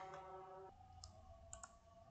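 Near silence with a few faint computer mouse clicks: one about halfway through, then two close together.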